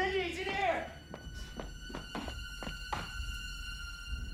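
A man's brief shout, followed by a quick, uneven run of about eight to ten short thuds, with sustained high tones of a film score held underneath.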